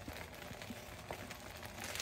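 Faint simmering of noodles and broth in a covered pan: a low steady hiss with a few soft ticks.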